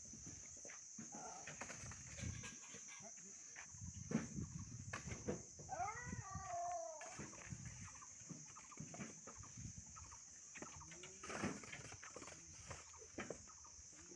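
Red clay bricks being unloaded from a pickup bed and dropped onto a pile, giving short, irregular clinks and knocks of brick on brick. A short pitched call, such as a farm animal's, sounds about six seconds in.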